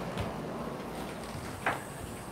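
Quiet room noise with a faint click just after the start and a short knock shortly before the end.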